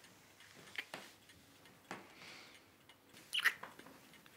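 Two people kissing: a few soft lip smacks and a breath, with the loudest smack near the end.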